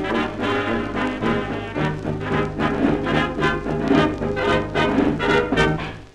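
Closing instrumental bars of an early-1930s dance orchestra playing from a 78 rpm shellac record, brass section over a steady beat, with the record's surface noise left in (no noise reduction). The music stops right at the end.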